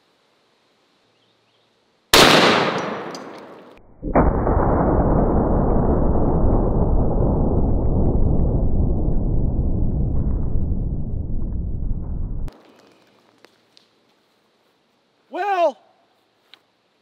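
A single shot from a .416 Rigby rifle about two seconds in: a sharp crack with an echo fading over a second and a half. About two seconds later comes a long, muffled rumble of about eight seconds, heard under the slow-motion replay of the bowling ball bursting, which stops abruptly. A short vocal sound comes near the end.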